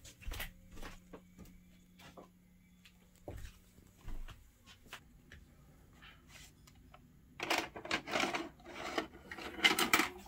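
Scattered light clicks and knocks, then a denser run of louder clicks and clatter about seven seconds in as a VHS cassette is pushed into a Panasonic VCR and drawn into its loading mechanism.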